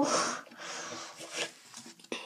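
Soft rustling and sliding of Match Attax trading cards being handled and laid down on a wooden table, opening with a brief breathy noise.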